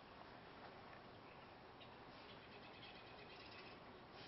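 Near silence: faint steady hiss with a few faint ticks in the second half.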